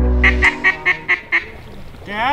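A quick run of six duck quacks, each a little quieter than the last, while background music cuts off about half a second in.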